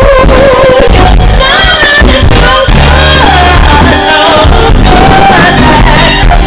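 Live band playing very loud, with women singing lead over electric guitars, bass, drums and keyboards.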